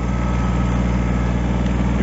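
Kubota tractor's diesel engine running steadily as the tractor pushes snow with its front blade.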